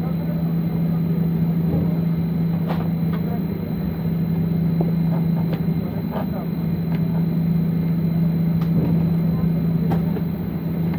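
Steady cabin noise of a jet airliner taxiing, its engines and air systems running with a strong, steady low hum under a rumble. A few faint clicks come through.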